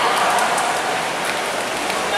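Steady, echoing din of an indoor swim race: swimmers splashing and spectators cheering.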